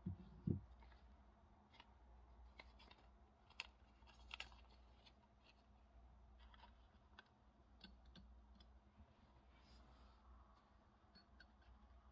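Near silence with faint clicks and rustles of a paper strip being handled and slid into a large metal paper clip over a glass cup, with two soft low knocks right at the start.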